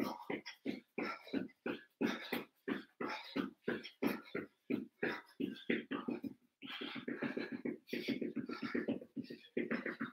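A man breathing hard in a quick, steady rhythm while exercising, with his feet landing on an exercise mat as he drives his knees up.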